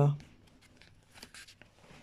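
The last syllable of a woman's speech, then faint rustling and a few light taps of paper being handled, with a small cluster of them a little over a second in.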